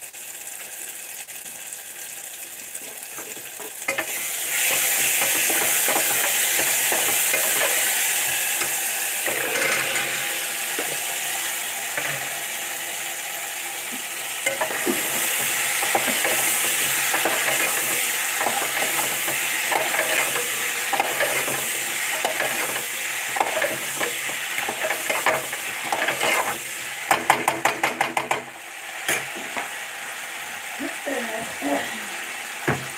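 A steady hissing, sizzling noise that grows louder about four seconds in, with scattered scraping and clicking strokes and a quick run of clicks near the end.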